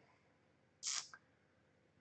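A quiet pause broken about a second in by one brief, soft hiss of a short breath drawn by the speaker.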